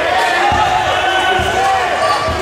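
Basketball dribbled on a hardwood gym floor at the free-throw line, bouncing twice about a second apart. Crowd chatter from the bleachers carries throughout.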